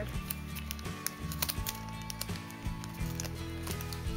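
Background music: sustained low notes that change every half second or so, with frequent short clicks over it.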